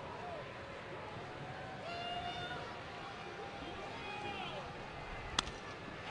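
Stadium crowd murmur with faint distant shouts, then one sharp crack of a bat hitting a pitch about five seconds in, popping the ball up.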